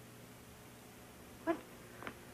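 A quiet pause filled by a steady low hum and faint hiss, broken about a second and a half in by a woman's short spoken "what?".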